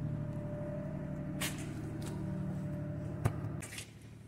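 Ford Transit Connect 1.8 diesel engine idling steadily, with a few sharp handling clicks and knocks; the engine sound drops in level near the end.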